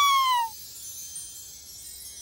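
Cartoon kitten's high meow, rising and then falling, ending about half a second in, followed by a faint, shimmering chime-like sparkle effect.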